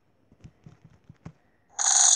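A few faint taps, then near the end a loud camera shutter sound effect played by the tablet as a photo is taken.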